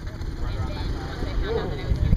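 Spectators' voices calling faintly from the sideline over a low, uneven rumble.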